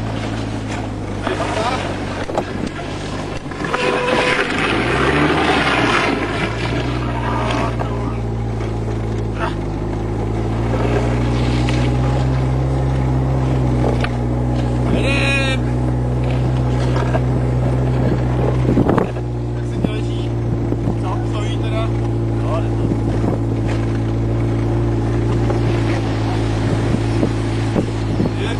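An engine running steadily throughout. Its pitch dips about five seconds in and shifts again after a knock about nineteen seconds in.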